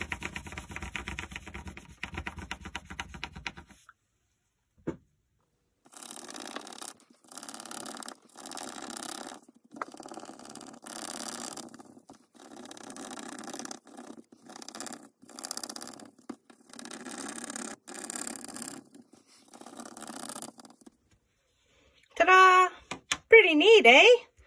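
Wax crayon rubbed back and forth across paper laid over a cardboard relief template: a fast run of scratchy strokes at first, then, after a short pause with a single click, repeated strokes about a second long with brief gaps. A short bit of voice comes in near the end.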